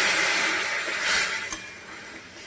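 Hot water poured into a kadai of hot oil and frying fish and greens, sizzling loudly and fading toward the end. A sharp knock about one and a half seconds in, the metal spatula against the pan.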